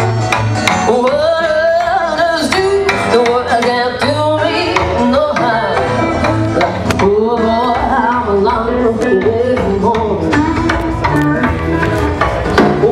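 Live rockabilly band playing: electric guitars with bent notes over bass and drums.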